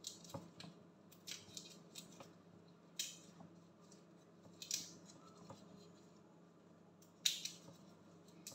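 Large raw shrimps being cleaned by gloved hands in a plastic basin: short, crisp crackles and snips of shell being broken and pulled away, about eight separate bursts, the loudest about three seconds in and again near the end.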